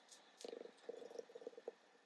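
Faint, quick scuffing strokes of a foam ink blending tool being dabbed on an ink pad and worked over cardstock through a stencil, starting about half a second in.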